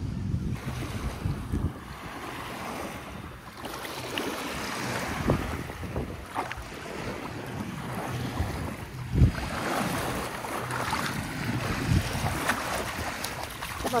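Ocean surf washing on a beach, with wind buffeting the microphone in low gusty rumbles and occasional thumps.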